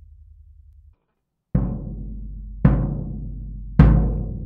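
Floor tom with a clear two-ply Evans EC2 batter head tuned very low, struck three times a little over a second apart, each hit ringing on in a deep, long boom; the last hit is the loudest. Before the hits, the faint low tail of the same drum with a coated Remo Ambassador head fades and cuts off about a second in.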